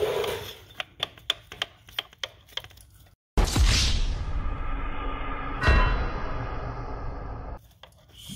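Light metallic clicks and taps of a spark plug socket and extension knocking against engine parts as it is worked down into the plug well. About three seconds in, after a brief dropout, a loud added sound effect with a musical sting starts suddenly, hits again about two seconds later, and stops just before the end.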